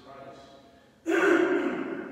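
A man's voice preaching, quiet at first, then a sudden loud burst of voice about a second in, like an emphatic exclamation or gasp.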